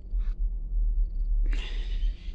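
A cat hissing: a short hiss just after the start, then a longer, louder one about one and a half seconds in, over a steady low rumble.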